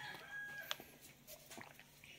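A rooster crowing faintly, its long held note ending under a second in, followed by a few faint clicks.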